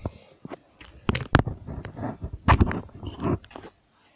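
Handling noise from a camera being moved and repositioned: a series of close knocks, clicks and rubbing. The loudest knocks come about a second in and again about two and a half seconds in.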